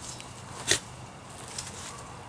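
A Samoyed rolling and wriggling on its back on dirt and gravel: faint rustling and scuffing, with one short sharp sound about two-thirds of a second in.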